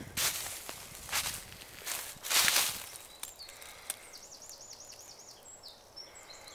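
Footsteps through dry leaf litter and brush, several in the first three seconds, then a bird's high, wavering call for about a second and a half, about four seconds in.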